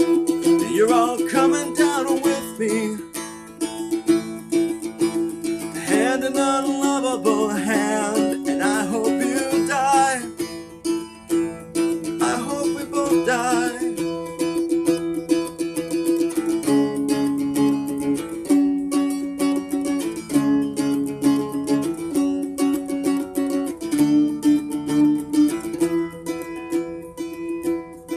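First Act child's acoustic guitar, strung with four strings in an open A-E tuning and its action raised for slide, played with a slide while strummed. Gliding, wavering slide notes in the first part give way to steadier rhythmic strumming.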